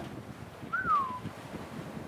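A single whistle-like note about half a second long, rising slightly and then gliding down, heard once near the middle, over steady background wind noise.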